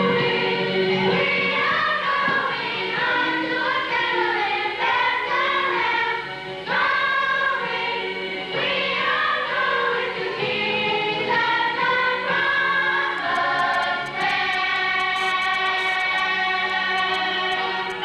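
Choir of girls and young women singing together, ending on a long held note.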